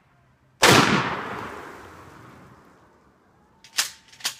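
A single gunshot from a long gun about half a second in, its echo dying away over about two and a half seconds, then two short sharp clacks near the end.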